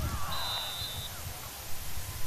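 Spectators shouting and cheering, with a referee's whistle blown once: a single high, steady blast of under a second, shortly after the start.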